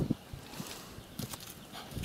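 Footsteps on a dry-grass and mud bank: a few uneven thuds, with brief rustling of dry grass.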